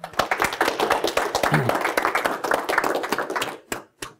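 Audience applauding, the clapping thinning out and stopping near the end.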